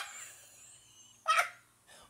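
A woman laughing: a loud, high shriek of laughter cuts off right at the start, then a single short, high yelp of laughter about 1.3 s in falls in pitch.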